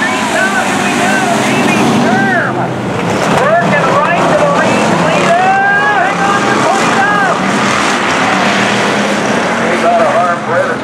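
A pack of hobby stock race cars running together, their loud engines rising and falling in pitch as they race past.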